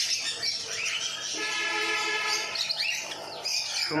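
A flock of small caged aviary birds chirping and calling over one another, with short rising-and-falling chirps throughout and a longer, steadier call in the middle.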